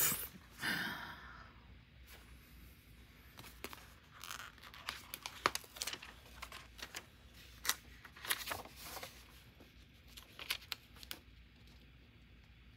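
A short laugh at the very start, then a paper sticker sheet being handled and a large sticker peeled from its backing: scattered crinkles and small clicks, sparse, about three seconds in to near the end.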